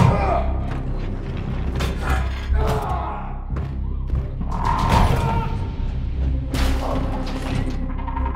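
Film soundtrack: a low, steady droning score with scattered heavy thuds.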